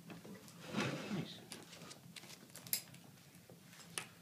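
Faint clicks, taps and rustling of small objects being handled on a table, with a short voice sound about a second in and a sharper click near the end.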